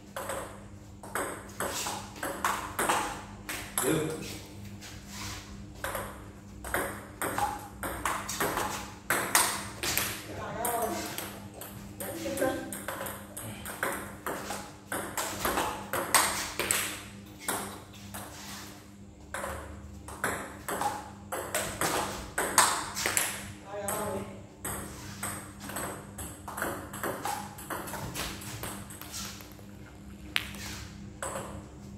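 Table tennis ball clicking on paddles and bouncing on the table in quick runs of serves and returns, during backspin serve practice.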